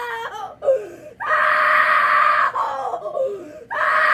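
A young woman screaming and wailing: a long, loud, held scream from about a second in, another starting near the end, and wavering crying sounds in between.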